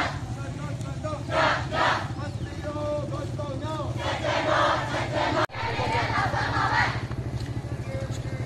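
A marching crowd of protesters shouting protest chants together in bursts a couple of seconds apart, with a steady low hum underneath. The sound cuts off abruptly for an instant about halfway through.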